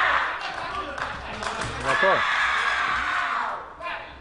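A person's voice giving long, drawn-out shouts, twice: the first fades out about a third of a second in, and the second runs from about two seconds in until shortly before the end.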